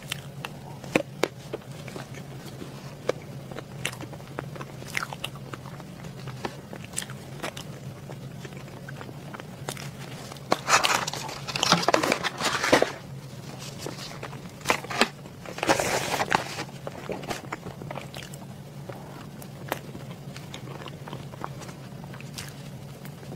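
Close-miked eating sounds: soft bites and chewing of a cake with scattered small clicks. About ten to thirteen seconds in, and again around sixteen seconds, louder bursts of crinkling and rustling as a clear plastic cake tray is handled; a steady low hum sits under it all.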